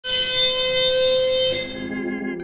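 A steady electronic alarm tone held at one pitch for about a second and a half, then giving way to sustained synthesizer chords.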